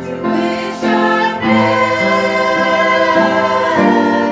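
Church choir, mostly women's voices, singing with held notes that change about once a second.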